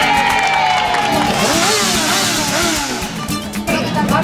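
A motorcycle passing close, its engine revving up and down several times, over music and crowd voices.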